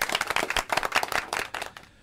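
Rapid, dense hand clapping, like a short round of applause, lasting nearly two seconds.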